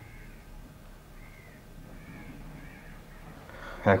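Four faint, short animal calls, each rising and falling in pitch, over a low steady hum.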